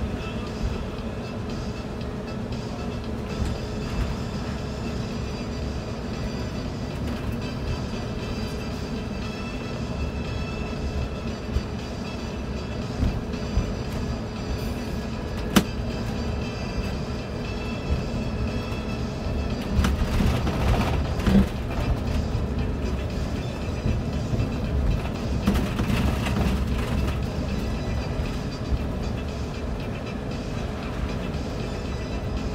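Ride noise inside a moving city bus: a continuous low rumble of engine and tyres on a wet road, with a steady whine over it and a few brief rattles and knocks.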